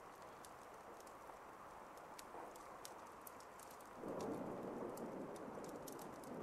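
Faint rain ambience, a soft steady patter with scattered drip ticks, growing somewhat louder about four seconds in.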